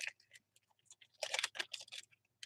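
Soft handling noise at a desk: a short run of quick clicks and rustles a little past a second in.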